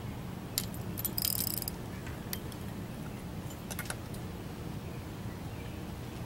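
Fishing tackle being handled: light metallic clicks and a short clinking clatter about a second in, as rods, reel and a metal-bladed spinnerbait knock together, then a few more scattered ticks. A steady low hum runs underneath.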